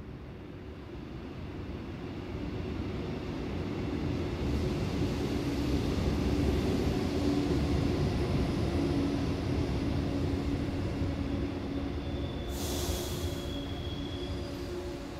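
A train rumbling past: a low, noisy rumble swells over the first few seconds and holds, with a steady hum, and a short hiss with a thin high squeal comes about a second before the end.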